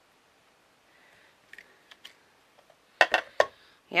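Handling of a clear acrylic stamp block and a chipboard disc on a craft mat: a few faint rustles and ticks, then a quick run of sharp hard clacks about three seconds in as the stamp is lifted off and the board picked up.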